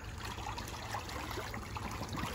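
Soft water swishing and light splashing as homemade foam-and-PVC water-aerobics dumbbells are pushed through pool water.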